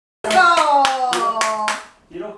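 Hands clapping about six times in a quick, even rhythm, with one long drawn-out cheering voice that slowly falls in pitch.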